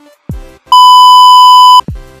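A single loud, steady electronic beep about a second long, starting a little under a second in, laid over electronic background music with deep, pitch-dropping kick drums.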